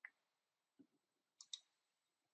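Faint computer mouse clicks: one at the start and a quick pair about one and a half seconds in, with near silence in between.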